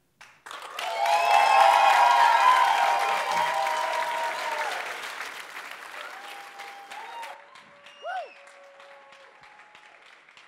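Audience applauding and cheering, starting suddenly about half a second in, loudest for the first few seconds, then fading away steadily. A few held cheers ride over the clapping early on, and a single short whoop comes near the end.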